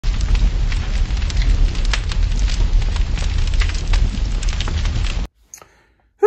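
Crackling fire sound effect with a deep rumble beneath it, loud, cutting off suddenly about five seconds in.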